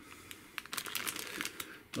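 Clear zip-lock plastic bag of cables crinkling as it is handled, a quick run of irregular crackles lasting about a second.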